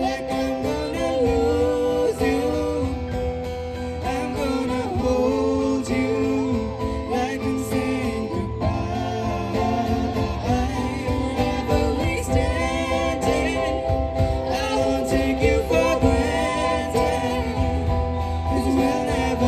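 A woman singing a slow pop ballad live into a microphone, her voice gliding between held notes over a steady instrumental accompaniment.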